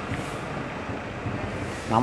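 A vehicle engine idling steadily under an open hood, an even running noise with no changes in speed.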